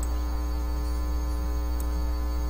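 Steady low electrical hum, with a row of faint higher tones above it.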